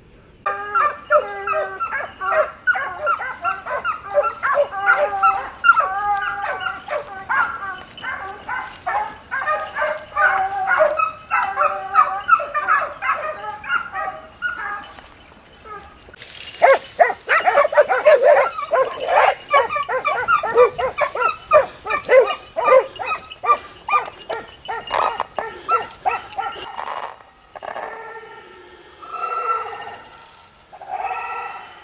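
A pack of boar-hunting dogs barking and yelping in chorus, many short overlapping calls several to the second. About halfway through the sound changes abruptly to another stretch of the same dense barking, which thins out near the end.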